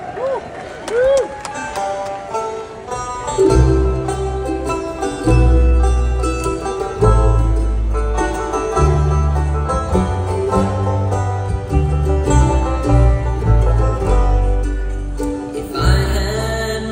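Acoustic bluegrass band playing an instrumental opening on mandolin, banjo, fiddle, acoustic guitar and upright bass. A sparse, quieter start gives way about three and a half seconds in to the full band, with the upright bass coming in strongly underneath.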